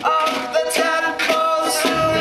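Acoustic band playing: a voice sings a long held "oh" over plucked charango and double bass, with short sharp plucked notes sounding through it.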